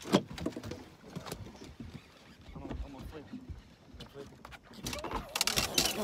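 Knocks and clatter on a bass boat's deck while a hooked fish is fought on a rod: one sharp knock at the start, scattered taps through the middle, and a quick run of clicks and rattles near the end.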